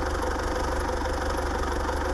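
Farm tractor's diesel engine running steadily as it pulls a field implement.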